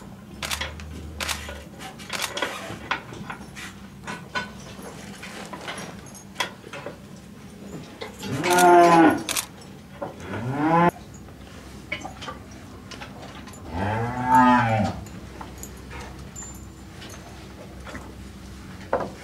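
Cows mooing: a long moo about eight seconds in, a shorter one right after it, and another long moo around fourteen seconds, each rising and falling in pitch. Scattered faint clicks and knocks between the calls.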